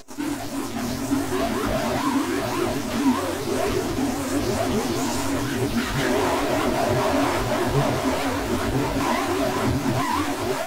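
A TV commercial's soundtrack run through a heavy distortion effect: a dense, steady wall of harsh noise with warbling, wavering tones. It starts right after a brief cut to silence.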